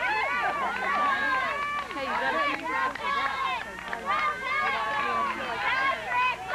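A crowd of children shouting and calling out at once: many high-pitched voices overlapping without a break, no single voice standing out.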